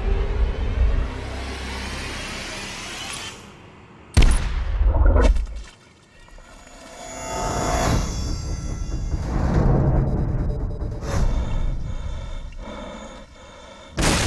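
Trailer score and sound design: a rising whoosh swell breaks into a heavy boom hit about four seconds in. It dies away, then a second long musical swell builds, with another hit near the end.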